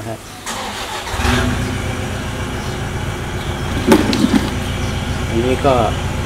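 A motor starts up about a second in and keeps running with a steady low rumble. There is one sharp click about four seconds in.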